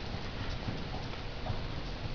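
Morgan horse trotting, its hoofbeats falling as faint dull thuds on the arena's dirt footing against a steady hiss.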